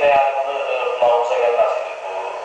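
A man talking in a thin, tinny voice with no bass, played through small computer speakers and picked up from across the room.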